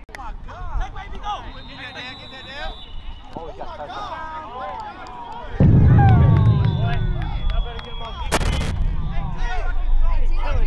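Players and onlookers shouting and cheering over a touchdown. Just past halfway a loud low rumble cuts in suddenly and lasts about three seconds, followed by a single sharp crack.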